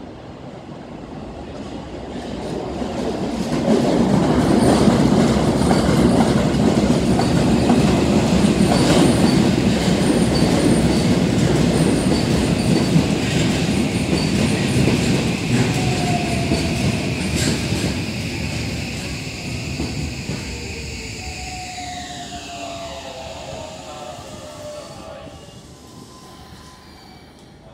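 Electric commuter train running along the platform with a heavy wheel-on-rail rumble and a few sharp clacks. It swells over the first few seconds and fades slowly. Near the end, tones falling in pitch sound as a train slows.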